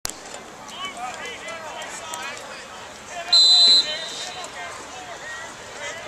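Sideline chatter of several voices, cut through about three and a half seconds in by one short, loud, high whistle blast: a referee's whistle.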